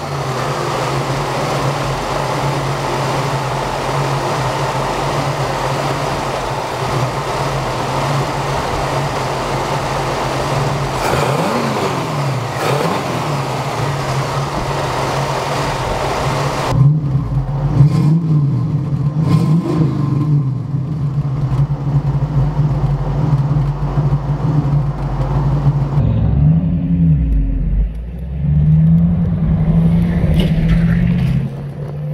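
The 1966 Sunbeam Tiger's rebuilt 260 cubic inch Ford V8 with a two-barrel carburettor idles steadily just after starting, with two quick blips of the throttle a little before halfway. Partway through the sound changes and the engine is revved a few more times. Near the end the note rises and falls as the car is driven.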